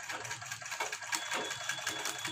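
Sewing machine running, stitching a blouse back-neck piece as the fabric is fed under the needle: a rapid, even clatter of the stitching mechanism, with a thin high whine joining about halfway through.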